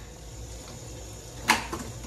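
Kitchen faucet running steadily into a stainless steel sink, with one sharp clink of dishware about a second and a half in.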